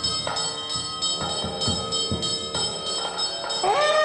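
Temple ritual music: steady bell-like ringing over drum strokes, two or three a second. Near the end a pitched wind instrument enters, playing a melody that slides between notes.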